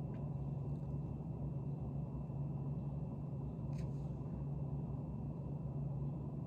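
Steady low hum of room tone, with a faint tick just after the start and another about four seconds in.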